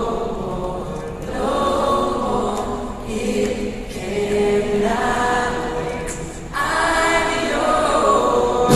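Several voices singing long held notes in harmony, with little or no instrumental backing, in phrases a second or two long.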